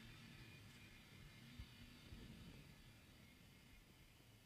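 Near silence: faint low room tone, with a soft knock about one and a half seconds in.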